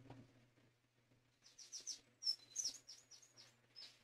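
Faint bird chirping: a quick series of short, high chirps, some sliding down in pitch, starting about a second and a half in, over a low steady hum.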